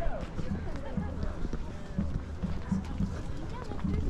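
Footsteps on a stone-paved path, with other people talking nearby.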